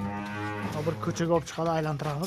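Cattle mooing: one long, low moo that wavers in pitch and drops lower in its second half.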